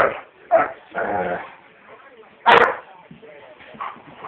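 Dogs barking in short bursts, the loudest bark about two and a half seconds in.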